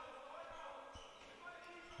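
Faint court sound of a handball game in a sports hall: a few dull thuds of the ball bouncing on the floor, with faint distant voices.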